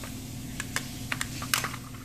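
Plastic toy building bricks clicking and knocking against each other as the brick-built trailer is handled, a handful of sharp light clicks in the second half.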